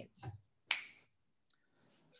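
A single short, sharp click or snap a little under a second in, after the tail end of a spoken word; the audio then cuts to dead silence.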